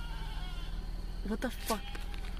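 Goat-like bleating: a long call that slowly falls in pitch and fades over the first second, then two short cries about a second and a half in.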